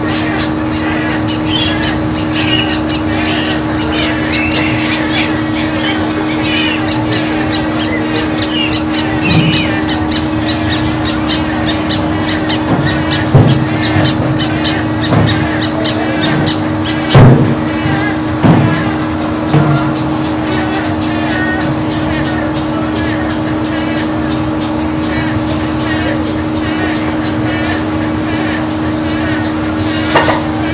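Swamp ambience with birds chirping and calling over a steady low hum. A few sharp knocks fall in the middle, the loudest about seventeen seconds in.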